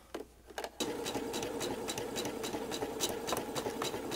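Electric sewing machine starting up about a second in, then stitching a seam at a steady speed: a motor hum with a rapid, even ticking of the needle strokes.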